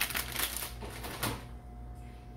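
Thin plastic grocery bags rustling and crinkling as they are handled, a quick run of crackles that dies down about a second and a half in.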